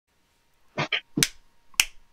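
Four short, sharp clicks, the first two close together, starting a little under a second in.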